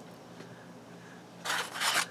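Black cardstock and a thin metal craft die being handled on a cutting mat: a short dry rubbing rustle about a second and a half in, after a quiet moment.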